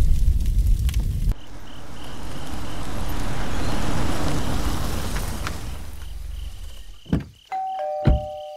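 Drum-heavy music cuts off about a second in, and a low rushing noise swells and fades. Near the end a sharp knock is followed by a two-tone ding-dong doorbell chime, a higher note then a lower one, both left ringing.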